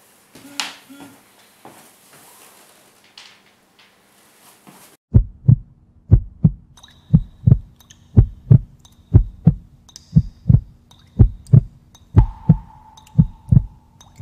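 Heartbeat sound effect: pairs of deep thumps about once a second, starting about five seconds in over a faint steady hum. Before it there is only quiet room sound.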